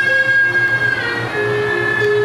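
Slow background music led by a haegeum, the Korean two-string bowed fiddle: one long high note, bending down about a second in and settling on a new held note, over lower sustained accompaniment notes.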